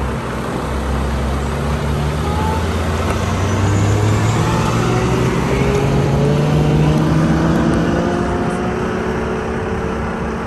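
4x4 engine pulling away on a gravel dirt road. Its pitch climbs in several steps as it shifts up through the gears, over a steady noise of tyres and road. It grows louder to a peak a little past the middle, then eases toward the end.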